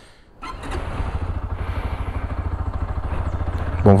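Dafra Next 300 motorcycle engine idling steadily with a fast, even pulse, starting about half a second in. The idle is running a little high.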